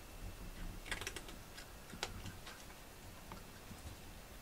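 Faint, scattered light clicks and ticks: a short cluster about a second in and a single sharper click about two seconds in.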